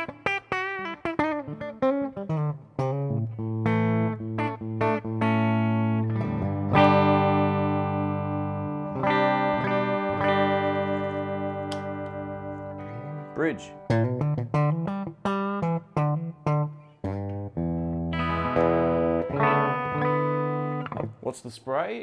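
Left-handed ES-style hollow-body electric guitar (Artist Cherry58L) played through a Peavey Bandit amp on both pickups, with the neck pickup's volume turned down a bit. It plays picked single-note licks with string bends, then a chord left ringing and fading for about six seconds, then more picked notes.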